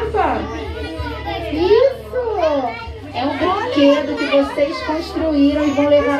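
Young children's voices calling out and chattering as they play, their pitch sweeping up and down.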